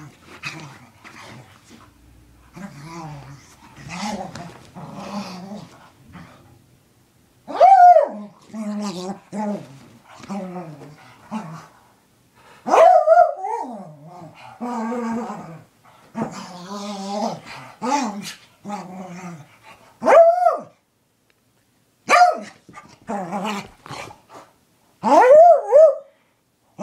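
Small dog growling in bouts while it rolls and rubs itself on the carpet, excited after a bath, broken by about five loud, short, high barks.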